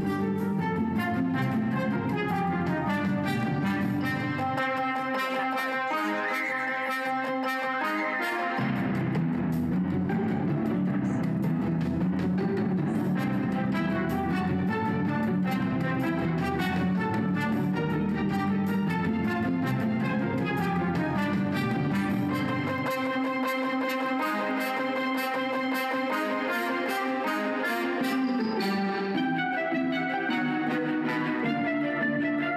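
Instrumental music from a CD playing on a Bose Wave Music System IV, with the low end dropping away for a few seconds twice.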